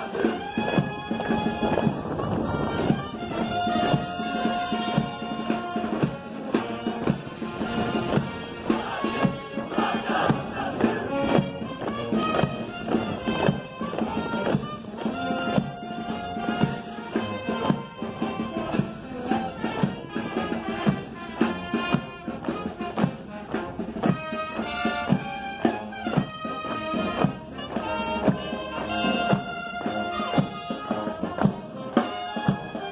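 Military band of brass and wind instruments playing a march, held notes over a steady beat.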